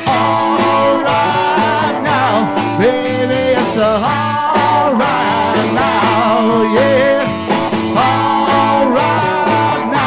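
Live band playing with electric guitar and a drum kit, a bending lead line over a steady beat.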